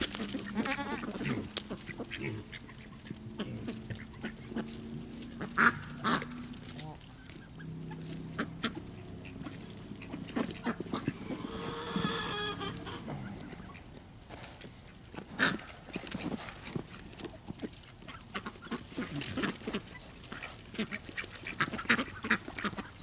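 Goats, ducks and Kunekune pigs feeding on corn on the cob: many short crunching and knocking sounds, with low animal calls in the first few seconds and one longer call about twelve seconds in.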